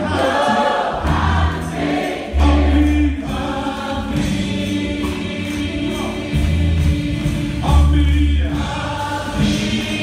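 Gospel choir singing with a live band, held bass guitar notes changing underneath every second or so.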